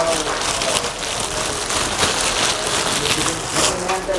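Clear plastic wrapping crinkling and rustling steadily as it is handled and unwrapped from a camera lens.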